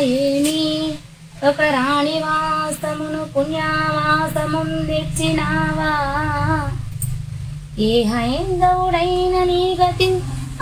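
A woman singing a Telugu verse in a slow, melodic chant, holding long notes that waver slightly, in phrases with short breaths between them.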